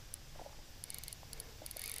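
Faint, scattered ticks from a fly reel being handled while a hooked carp is played on the line.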